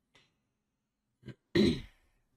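A man clearing his throat close to the microphone: a short low sound about a second and a quarter in, then a louder throat-clear near the end.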